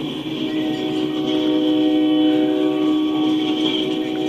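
A freight train of covered hopper cars rolling past, with a steady held chord of several tones sounding over the rumble of the cars.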